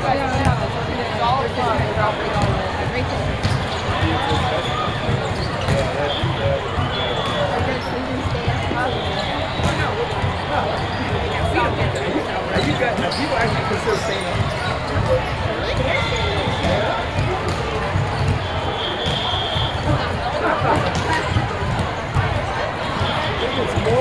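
Busy volleyball-hall ambience: a steady babble of many voices from players and spectators across several courts, with volleyballs being hit and bouncing, and a few short high squeaks of sneakers on the court.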